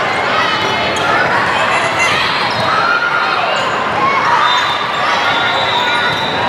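Volleyball rally in a large gym: the ball being struck with sharp knocks a few times, amid players' shouted calls and a constant hubbub of voices.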